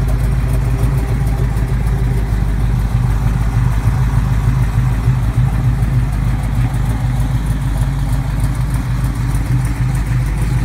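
Classic Plymouth muscle car V8 engine idling steadily, deep and low, without revving.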